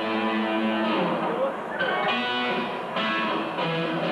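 Electric guitar ringing out chords through the amplifier, the chord changing about once a second, with no drums.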